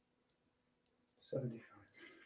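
A single sharp click about a quarter second in, then a few faint clicks, as long fingernails handle a small metal jewelry clasp. A short murmured vocal sound comes in about a second and a half in.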